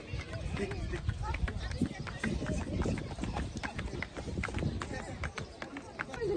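Hooves of a small pony clip-clopping on a tiled path as it is led at a walk, a run of irregular clicks, with faint voices underneath.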